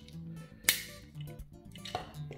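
A single sharp plastic click, a little under a second in, as a part of a Transformers Cyberverse Rack'n'Ruin plastic toy is swung up into place during its transformation, over soft background music.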